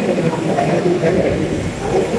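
Indistinct speech: voices talking, less clear than the lecture around them.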